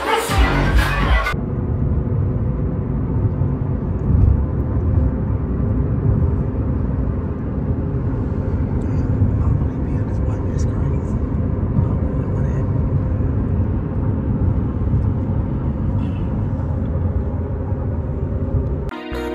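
Loud party music cuts off about a second in, giving way to the steady low rumble of road and engine noise inside a moving car's cabin.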